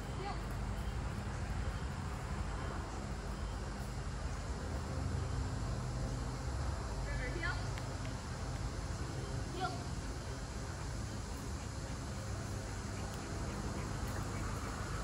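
Steady low outdoor rumble, like distant traffic, with a faint voice briefly heard twice, about seven and nine and a half seconds in.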